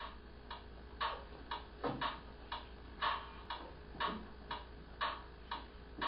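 A clock ticking steadily, about two ticks a second, with alternating stronger and weaker ticks in a tick-tock pattern.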